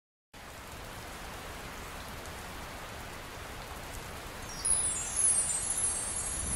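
Sound of falling rain as a steady hiss, starting just after the beginning, as the intro of a song's backing track. About four and a half seconds in, a louder, high shimmering run of bell-like notes comes in, descending in pitch.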